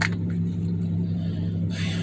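Steady low hum inside a car's cabin, with a sharp click at the very start and a breathy sigh near the end.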